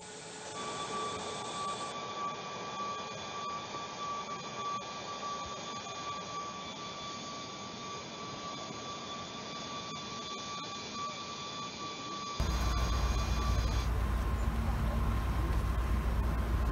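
Steady whine of the jet engines of a Tu-214 airliner running on the apron, several thin high tones held over a constant noise. About twelve seconds in it cuts to a louder, low steady rumble of idling car engines.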